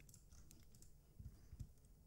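Near silence with a few faint computer clicks.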